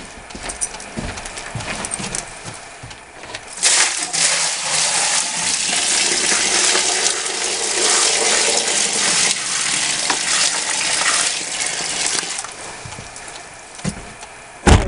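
Water poured from a bucket into a five-gallon plastic bucket of gravel material: a few light knocks, then a steady splashing pour starting about four seconds in and lasting about nine seconds before it tails off.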